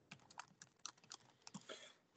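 Faint computer keyboard typing: a run of soft, irregular key clicks, about a dozen.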